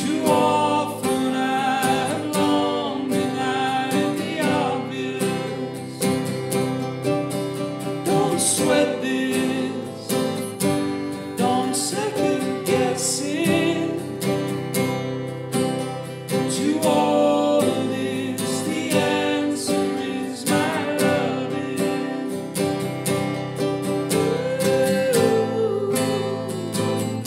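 Two acoustic guitars strummed together in a steady rhythm, playing chords of a song.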